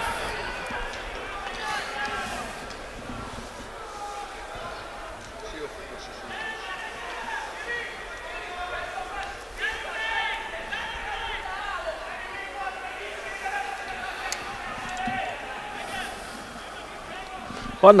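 Football stadium ambience: distant shouting voices from the pitch and stands run throughout, with a few sharp knocks from the ball.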